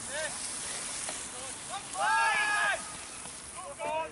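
A spectator's long shout about two seconds in, over a steady hiss, with fainter calls from the crowd around it.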